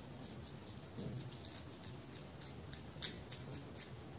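Fingertips and long fingernails rubbing and scratching through short hair against the scalp during a head massage: irregular soft crackles and rustles, with a sharper one about three seconds in.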